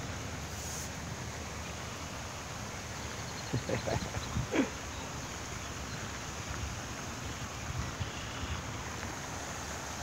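A few short calls from Canada geese, bunched together about three and a half to five seconds in, over a steady background hiss.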